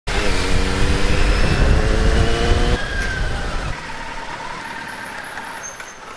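A motor vehicle's engine, loud with a deep rumble and a note that falls slowly in pitch for about the first three seconds. It then drops suddenly to a quieter steady engine and road rumble.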